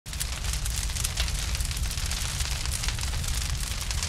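Crackling fire sound effect with a low rumble underneath: a dense run of small pops over a steady hiss, starting abruptly.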